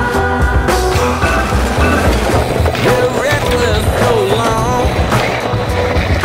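A funk-rock song with a steady beat plays over BMX street-riding sounds: tyres rolling on concrete and several sharp knocks from the bike hitting the ground or obstacles.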